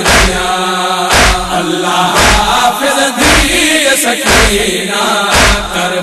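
A noha lament chanted in Saraiki, the refrain sung in long drawn-out notes over a deep steady beat that lands about once a second.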